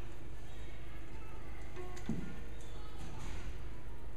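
Violin being lifted into playing position and the bow set on the strings: a few faint brief tones and a click about two seconds in, over a steady low room hum.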